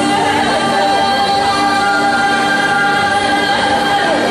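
Mongolian-style song played loud over a hall's sound system, with a sung note held steady for about three seconds over sustained accompaniment.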